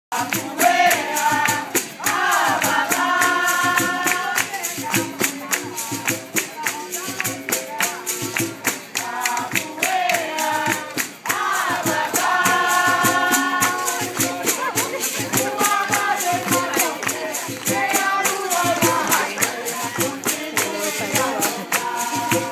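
Capoeira music: berimbaus and a pandeiro tambourine keep a steady, quick percussive beat under group singing that comes in phrases.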